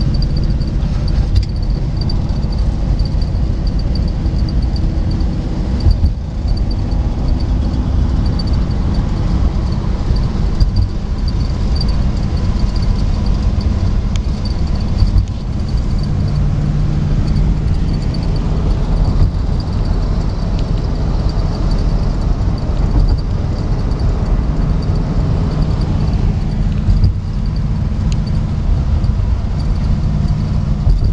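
Engine and road noise inside a moving car's cabin on a wet highway, with a thin steady high whine over it. The engine note rises a little about halfway through and again near the end.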